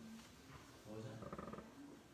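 Faint talking voices, probably the man and children at the front, with a rough, growly stretch of voice about a second in.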